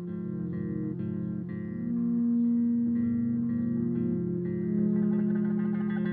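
Electric bass guitar played through effects pedals: sustained, layered notes over a plucked pattern that repeats about twice a second. A higher note is held from about two seconds in to about four, and a wavering, busier texture comes in near the end.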